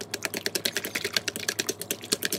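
Wooden chopsticks clicking rapidly against the side of a stainless steel bowl as they briskly stir raw shrimp in starch and egg white. It is a quick, even run of clicks, about ten a second.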